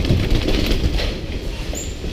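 Bicycle rattling and knocking with a low rumble as it is ridden down concrete steps and onto a tiled floor, the jolts picked up by a camera mounted on the bike.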